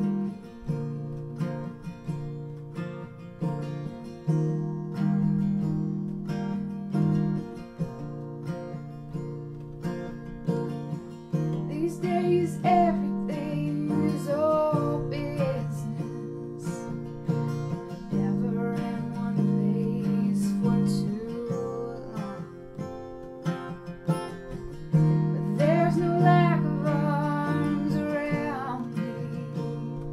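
Acoustic guitar with a capo played in a steady strummed and picked pattern, with a woman singing over it in phrases, clearest about twelve seconds in and again near the end.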